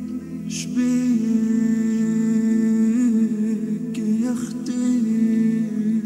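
A solo male voice in devotional chant, holding long wordless notes with slight wavers in pitch and no instruments, broken twice: about half a second in and about four seconds in.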